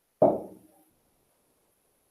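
A single short vocal sound from a person, starting sharply about a quarter second in and fading within half a second, followed by near silence.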